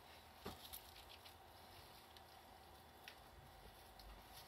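Near silence with a few faint light clicks and scratches from a pet squirrel moving about: a small cluster about half a second in and one more about three seconds in.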